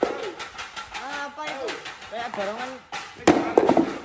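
Onlookers' voices: short called-out exclamations with gliding pitch, then a louder, noisier burst of voices about three seconds in.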